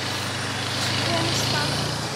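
A motor vehicle engine idling steadily, a low hum under an even hiss.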